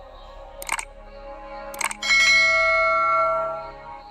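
Subscribe-button animation sound effects: two short mouse clicks about a second apart, then a bell chime that rings and fades away over about a second and a half.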